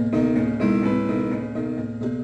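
Prepared piano playing, its strings fitted with screws, bolts and strips of rubber. Notes are struck in a steady pulse about twice a second, with a change to higher notes in the middle.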